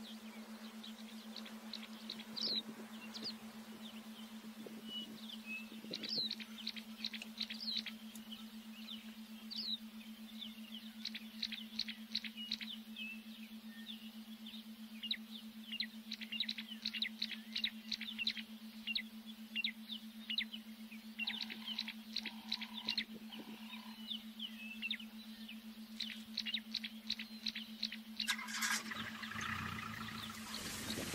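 Birds chirping and calling in the bush, many short high chirps, thickest in the second half, over a steady low hum. A short burst of noise comes near the end.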